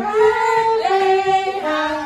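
A high voice singing a slow melody of held notes that step mostly downward in pitch.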